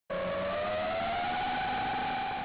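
Intro sound effect for an animated logo reveal: a rushing whoosh with a tone that slowly rises in pitch, then levels off.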